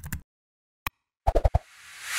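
Sound effects of an animated logo intro: a single sharp click a little under a second in, a quick run of pops, then a whoosh that swells toward the end.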